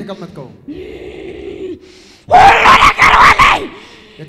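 A woman held during deliverance prayer groaning, then, a little past halfway, letting out a long, very loud, hoarse scream into a microphone held close to her mouth.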